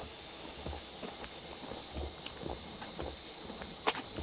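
A steady, high-pitched chorus of insects shrilling in the trees.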